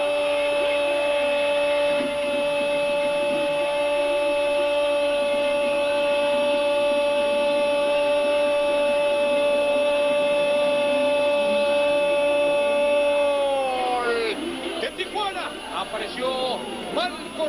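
A TV commentator's long drawn-out goal call, one shouted 'gol' held on a single steady pitch for about thirteen seconds before the voice falls away. It sounds over the noise of a stadium crowd, and excited commentary follows near the end.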